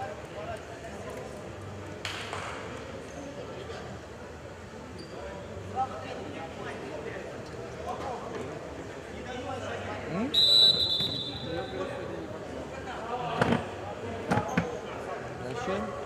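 Indistinct voices of players and coach on a futsal court, then a referee's whistle blown once about ten seconds in, the loudest sound here, followed by a few thuds of the ball on the hall floor.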